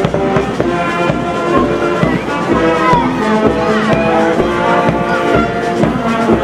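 Brass music with a steady bass-drum beat, with voices faintly underneath.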